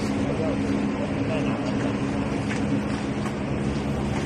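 An electric motor running with a steady low hum.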